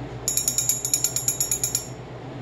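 Small metal hand bell rung rapidly by a cockatoo gripping it in its beak: a quick run of about ten bright, ringing strikes a second that lasts about a second and a half.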